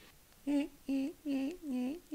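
A person humming a short wordless tune: a string of separate notes, about two a second, each with a small dip and rise in pitch.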